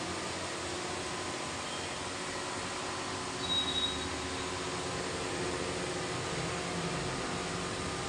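Three-motor glass edging and beveling machine running: its electric motors give a steady hum with several even tones over a noise haze. A brief knock comes about three and a half seconds in.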